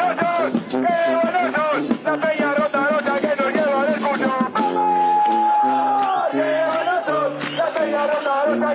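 A charanga street brass band playing a lively tune: saxophones and trumpet on the melody over a sousaphone bass line, with bass drum, crash cymbal and snare keeping the beat. A long held high note sounds about halfway through and falls away at its end, and the crowd sings and shouts along.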